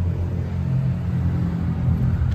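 Steady low rumble of an idling engine, a deep hum with no rise or fall.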